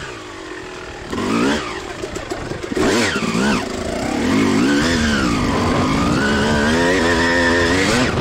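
Suzuki RM250 single-cylinder two-stroke engine under a riding throttle: it drops off throttle at the start, is blipped up and down about one and a half and three seconds in, then holds steady high revs from about five seconds on.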